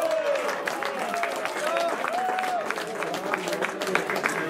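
Spectators and players shouting, with scattered clapping.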